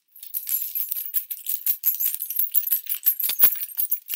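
A bunch of metal keys on a key ring being shaken, jangling in a quick, uneven run of bright clinks that starts just after the beginning.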